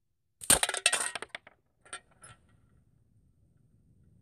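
A slingshot shot striking its target: a sudden loud crack that breaks into a clattering rattle for about a second, then two lighter clicks.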